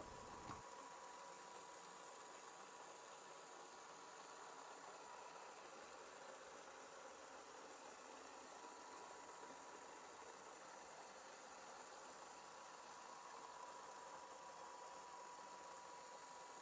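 Near silence: a faint steady hiss with a thin, faint steady tone.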